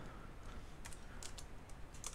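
Faint typing on a computer keyboard: a few scattered keystrokes.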